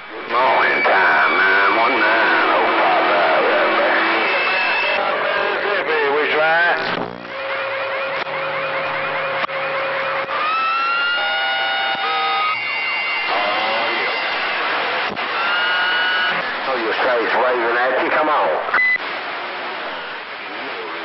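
Two-way radio receiver audio from a Magnum CB/ten-metre radio: distant, garbled voices buried in static, with steady whistling heterodyne tones. About halfway through, a cluster of whistles slides upward and then holds.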